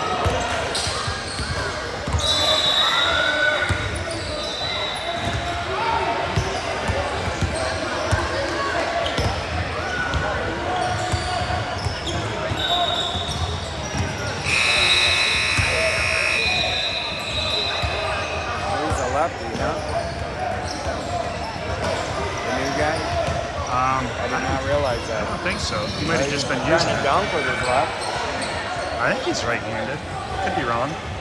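A basketball bouncing and dribbling on a hardwood gym floor during a game, the sound echoing around the large hall, with voices from the court and sidelines throughout. A shrill tone of about two seconds sounds about halfway through.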